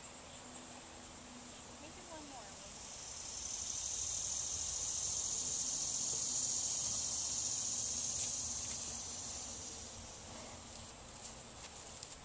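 Insects buzzing in a steady, high-pitched chorus that swells louder from about three seconds in and fades back down after about nine seconds.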